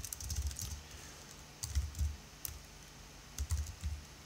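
Typing on a computer keyboard: several short bursts of keystrokes with brief pauses between them.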